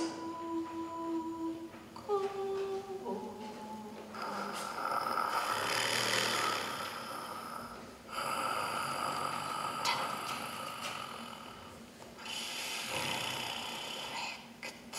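Voices holding long hummed notes, which give way about four seconds in to breathy, hissing sounds in three stretches of a few seconds each.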